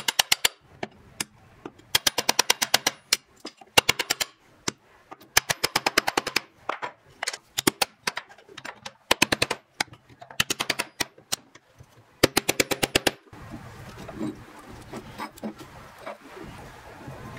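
Small hammer tapping a wooden block to drive wooden handle scales down onto a cleaver's tang, in about eight quick bursts of light, sharp taps with short pauses between. The tapping stops about three seconds before the end, leaving quieter handling noises.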